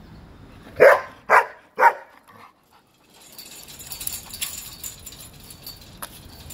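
Five-month-old German Shepherd puppy barking three times in quick succession, about half a second apart, followed by a few seconds of faint rustling.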